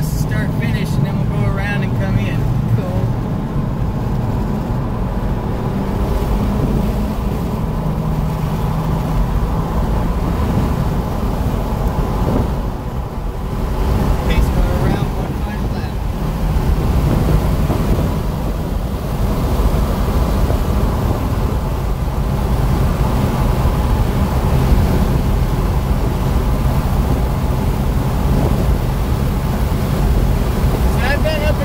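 Car engine and tyre and wind noise heard from inside the cabin while driving at speed around a racetrack, a steady drone whose engine note shifts in pitch now and then.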